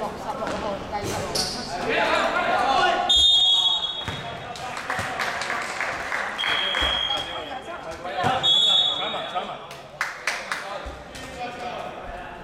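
Basketball game in a large gym: the ball bouncing on the court and players shouting, echoing in the hall, with two short high referee-whistle blasts about three seconds in and again about eight seconds in.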